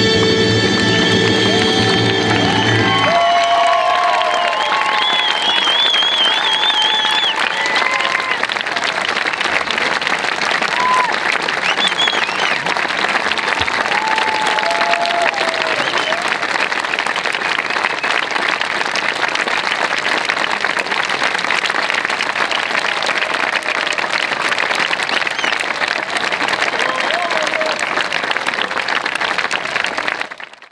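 Symphony orchestra holding its final chord for about three seconds, then an audience applauding, with scattered whistles and shouts, until the sound cuts off suddenly at the end.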